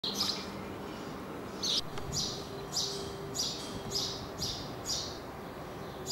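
A small bird chirping, a short high call repeated about twice a second.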